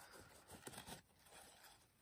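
Near silence, with faint rustling of a paper towel being rubbed over a small washer.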